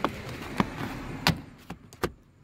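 Plastic door sill trim being pressed down by hand, its clips snapping into place with a few sharp clicks and knocks, the loudest just after a second in.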